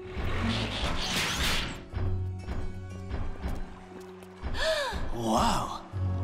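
Cartoon sound effect of a rock wall crashing and crumbling as a bulldozer breaks through it, loudest in the first two seconds, over background music.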